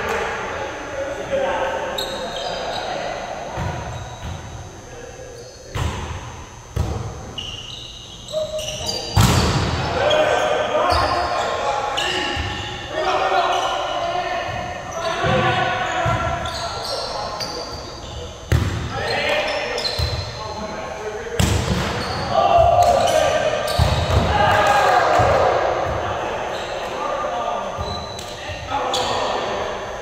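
Volleyball rally in a large gym: repeated sharp hits of the ball off players' hands and arms, ringing in the hall, with players' indistinct calls and chatter.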